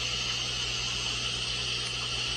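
Steady hiss with a low electrical hum underneath: the background noise of a live broadcast audio feed.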